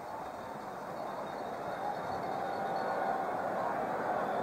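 Football stadium crowd cheering, growing a little louder: the home crowd reacting to a fourth-down pass breakup at the goal line.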